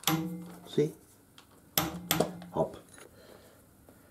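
Light metal clinks of a cup-type oil filter wrench coming off a freshly fitted oil filter, with two drawn-out wordless hums from a man.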